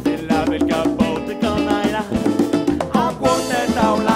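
Upbeat salsa-style band music: horn melody lines over a repeating low bass line, drum kit and percussion.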